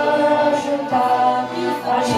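Two women singing an old Romanian Christian hymn together through microphones, in long held notes.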